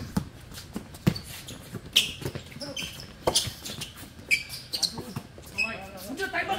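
A basketball bouncing on a hard outdoor court as a player dribbles, a few bounces about a second apart, with short high squeaks of shoes on the court.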